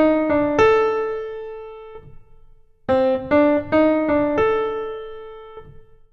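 A piano plays a short five-note melodic motif as single notes, one at a time, ending on a held note that rings and fades. It is played twice, the second time starting about three seconds in.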